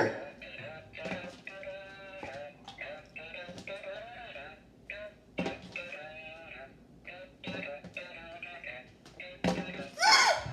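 Electronic toy pig playing a quiet, tinny synthetic tune while it is passed from hand to hand, the run-up before it makes its fart noise.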